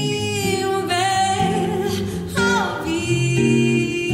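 A woman's voice singing long held notes with vibrato, sliding down in pitch about two and a half seconds in, over acoustic guitar accompaniment.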